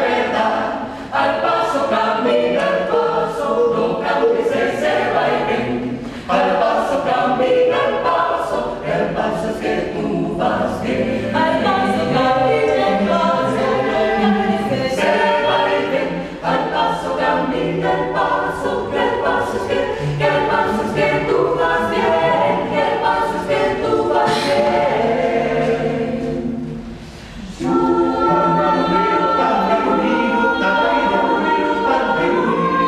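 A cappella mixed choir of men's and women's voices singing a porro jazz arrangement, with a steady rhythmic pulse of sharp sung syllables. The singing drops briefly near the end, then comes back in.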